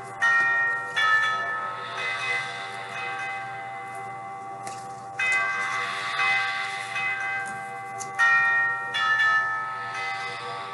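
Bells ringing: a series of struck, pitched bell tones, each ringing on after it sounds, in a short phrase that comes round again near the end.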